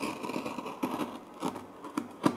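A knife cutting open a cardboard shipping package, with several uneven scraping and rubbing strokes.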